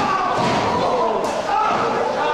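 A wrestler's body slamming onto the ring canvas with a thud a little past the middle, over raised voices shouting in the hall.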